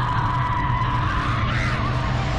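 A woman's long, held scream that rises in pitch briefly near the end, over a low, steady music drone.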